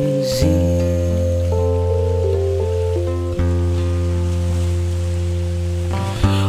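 Live band music with no singing: sustained chords over a low held bass note, the chords shifting a few times.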